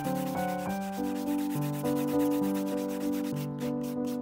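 An epoxy resin pendant rubbed back and forth on a sanding sponge: a quick scratchy rasp of sanding strokes, wet-sanding the resin smooth. Piano-like background music plays throughout.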